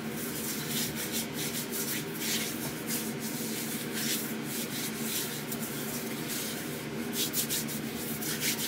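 Hands rubbing palm against palm, working moisturiser into the skin: a run of quick, uneven swishing strokes over a faint steady hum.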